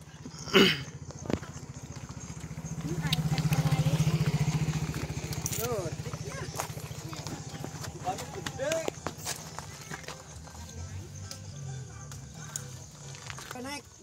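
Diesel engine of a Sakai road roller running with a rapid low knocking, growing louder for a few seconds about three seconds in and then settling back.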